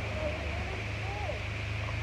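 A car engine idling steadily, a low even hum, with faint voices over it.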